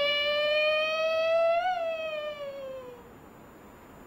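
Female Kunqu opera singer holding one long sung note. Its pitch slowly rises, then falls away and fades out about three seconds in.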